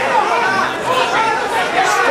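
Overlapping voices of spectators and corner coaches at a grappling match: several people talking at once in a large hall.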